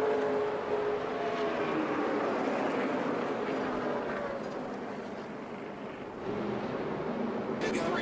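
Race truck engines running at speed over a broad track and crowd roar, heard through the TV broadcast. The engine notes fade and fall away, and a fresh engine note rises near the end.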